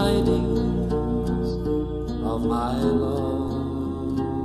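Folk song near its close: acoustic guitar accompaniment under sustained chords, with a wavering melody line and the bass note changing about three seconds in. No words are sung.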